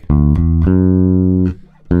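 Electric bass guitar played clean: a couple of quick plucked notes leading to a held note that is cut off about a second and a half in, then a new note plucked near the end that rings on. The notes contrast the major third of D with the flat third, F.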